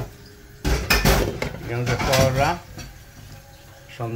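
Metal kitchenware clattering and scraping against a cooking pan for about a second, starting just over half a second in.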